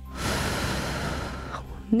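A woman breathes out hard close to a headset microphone: one breathy rush lasting about a second and a half.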